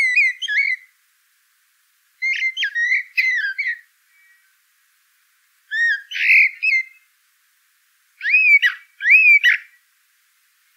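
A songbird singing four short phrases of clear, whistled notes that slide up and down, each phrase a second or two long with short pauses between.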